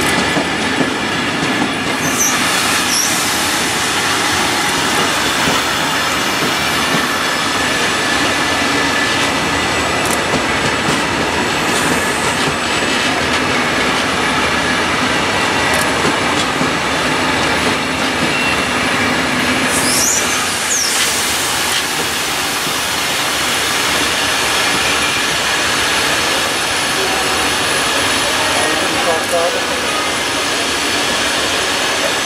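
A long train of Belgian SNCB passenger coaches rolling slowly past: a steady rumble and rattle of wheels on rails. Brief high wheel squeals come about two seconds in and again about twenty seconds in.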